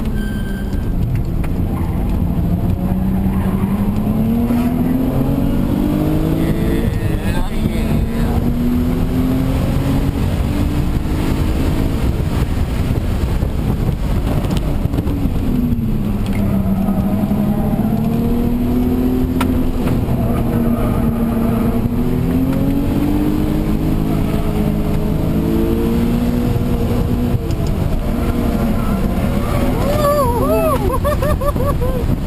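Audi B5 S4's twin-turbo V6 heard from inside the cabin while driven hard on track: the engine note climbs steadily under acceleration for several seconds at a time, falls sharply about fifteen seconds in as the car slows, then climbs again.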